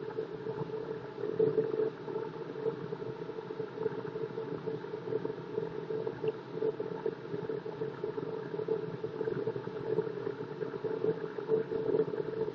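Delta wood lathe running with a steady hum, with a few faint knocks as the tool rest and turning tool are handled.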